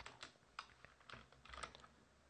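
Faint typing on a computer keyboard: about eight separate soft key clicks spread over the first second and a half or so.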